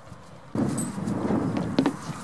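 Goat kid bleating: a wavering call that starts suddenly about half a second in and lasts about a second and a half, with a sharp knock near the end.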